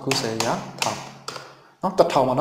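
A man speaking, then a single keyboard key tap near the end as a spreadsheet entry is committed.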